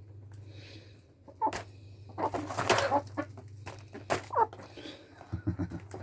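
Birds calling in several short bursts, some with brief pitched notes, over a low steady hum.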